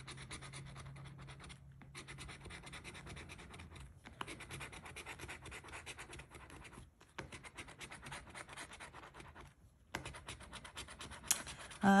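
A silver coin scratching the coating off a paper scratch-off lottery ticket in quick back-and-forth strokes, in several runs broken by brief pauses.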